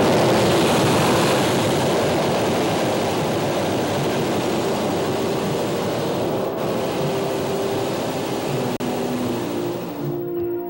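Hot air balloon's propane burner firing in one long, steady blast of flame, heating the envelope to make the balloon climb. There is one brief dropout near the end.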